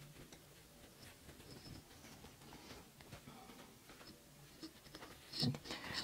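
Faint rustling of cotton fabric with a few light ticks as the pieces are handled and pinned on a tabletop.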